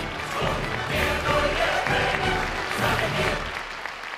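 Stage-musical music with an audience applauding over it, thinning out near the end.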